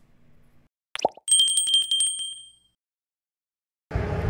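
Subscribe-button sound effect: a click and short pop about a second in, then a bright bell ding that rings with a fast flutter and fades out over about a second and a half.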